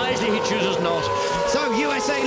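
Open-wheel A1GP race cars' V8 engines running at high revs, a steady engine note that sags slightly in pitch, heard under commentary.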